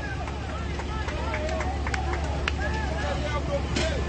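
Faint background chatter of many voices with street noise over a steady low hum, in a pause between loud amplified speech.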